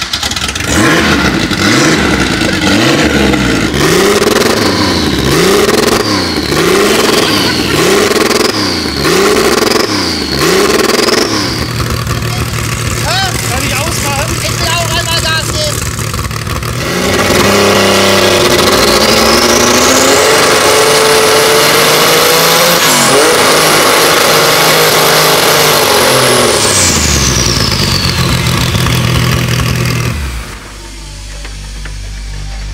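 Porsche 911 Carrera RSR Turbo 2.1's turbocharged flat-six, which has practically no exhaust after the turbocharger, blipped repeatedly about once a second. It then settles to a rough idle and is revved up once and held high for several seconds before falling back to idle. It is unbeschreiblich laut (indescribably loud), measured at 138.1 decibels.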